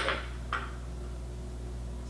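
Quiet room with a steady low hum, and one brief soft tap about half a second in as a teaspoon of sugar is tipped into a stainless steel stand-mixer bowl.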